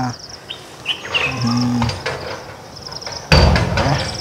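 Crickets chirring steadily in the background, with a short low hum about a second and a half in and a loud, sudden low thump near the end.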